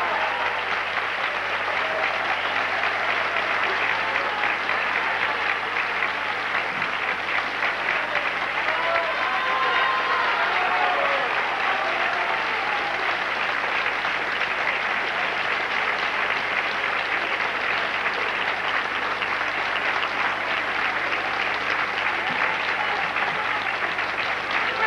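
Audience applauding, a steady, dense sound of many hands clapping that holds throughout, with a few voices faintly heard over it around the middle.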